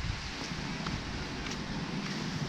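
Outdoor street background noise: wind buffeting the microphone over a steady low rumble, with no clear single event.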